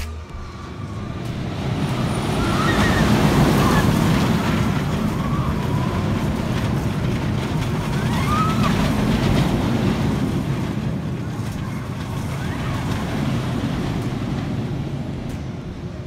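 A steel inverted roller coaster train runs along the track overhead, a broad rumble that swells over the first few seconds and then eases off slowly. A few short cries from the riders rise above it.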